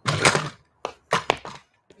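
A pair of dumbbells being set down on an exercise mat: a clatter first, then about four short knocks over the next second.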